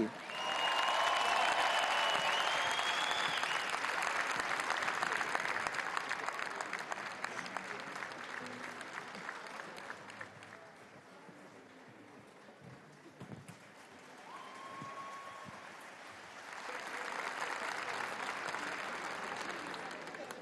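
Large concert-hall audience applauding a singer's entrance: loud at first with a high whistle-like tone over it, dying down by about ten seconds in, then swelling again near the end.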